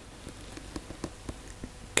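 Faint, irregular small ticks and taps from hands working fly-tying materials at the vise, with a light background hiss between them.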